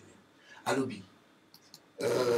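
A pause in speech: one short spoken word a little under a second in, then a few faint clicks near the end.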